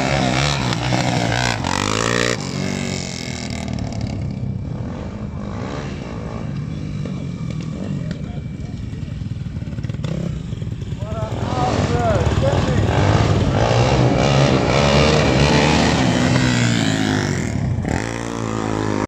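A sport quad bike's engine revving hard through a wheelie at the start, then motorcycle engines revving loudly from about eleven seconds in, with a quieter stretch between.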